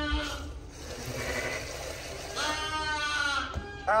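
Hungry lambs bleating for their milk feed: one long bleat at the start and another about two and a half seconds in.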